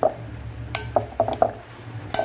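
A metal utensil clinking against a glass bowl while a broccoli salad is stirred: about six sharp, irregular clinks, some ringing briefly.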